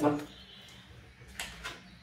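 A deck of divination cards being handled after it was dropped, heard as two brief soft rustles or taps about a second and a half in, against otherwise quiet room tone.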